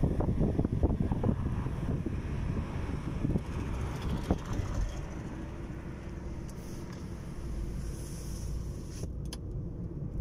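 A car driving along a road, heard from inside: a low road and engine rumble. Gusty wind buffets the microphone for the first couple of seconds, then the rumble settles and grows steadier and a little quieter.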